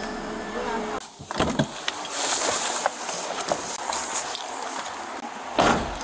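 Handling noise on a body-worn camera: clothing rustling over the microphone and a few knocks, with a short heavy thump near the end.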